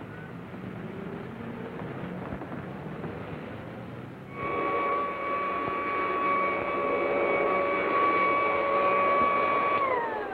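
City street traffic noise. About four seconds in, a steady high tone with overtones starts suddenly, louder than the traffic, and holds at one pitch until it bends downward right at the end.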